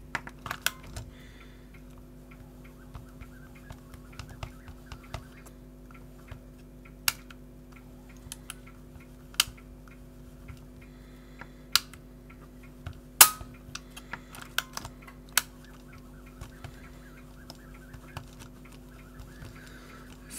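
Scattered sharp clicks and taps as fingers handle the plastic and metal parts of an opened cassette player mechanism, over a faint steady hum; the loudest click comes about two thirds of the way through.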